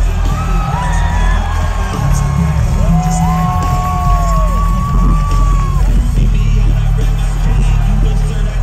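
Loud live concert music with a heavy bass beat over the PA, with long held calls and whoops from the crowd over it.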